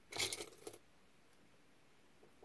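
Small pieces of metal costume jewelry clinking and rattling together in a short flurry of clicks lasting about half a second, as the next piece is picked out of the pile.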